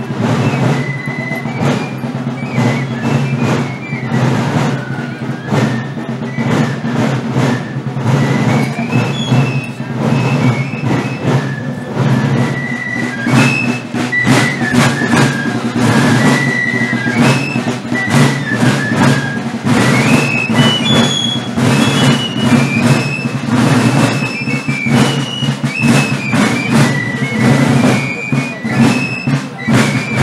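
A marching brass band plays a march. Sousaphones and low brass hold a steady bass under a high, moving melody, with drumbeats throughout.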